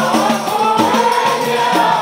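A group of men singing a devotional Maulid chant together into microphones, several voices holding long notes over a steady, evenly repeating beat.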